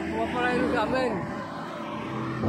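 A man's voice speaking over a steady background drone; the speech trails off a little past a second in.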